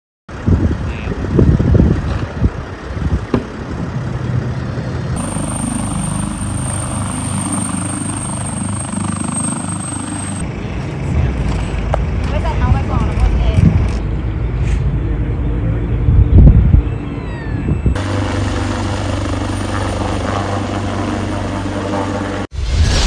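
Outdoor sound from several clips joined with abrupt cuts, with some indistinct voices. Over the last few seconds a helicopter's rotor and engine run steadily overhead.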